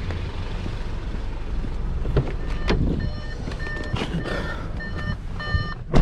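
Low rumble of wind and traffic with a few clicks. About halfway through, an electronic beeper starts and keeps going: short pulses of one bright, buzzy tone, about two beeps a second.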